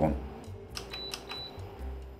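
Induction cooktop's touch controls being pressed: a few light taps, then two short high beeps about a second in.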